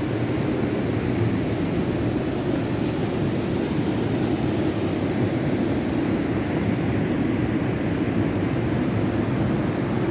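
Steady, deep roar of ocean surf and wind at a rocky shoreline, even throughout with no breaks or distinct events.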